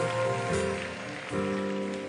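Soft background music with held chords that change about half a second in and again a little after a second, over a faint even hiss.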